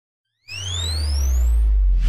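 Synthesized logo sound effect: about half a second in, an electronic tone sweeps steadily upward in pitch for about a second, over a deep low drone that swells and holds.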